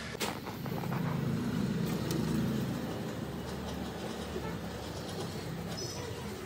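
A single sharp click, then a low vehicle rumble that swells over the first couple of seconds and slowly fades.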